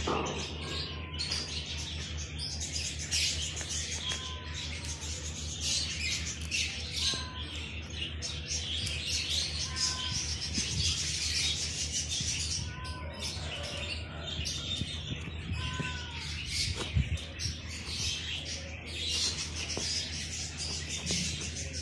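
A dense chorus of small birds chirping and chattering, with short whistled notes every second or two, over a low steady hum.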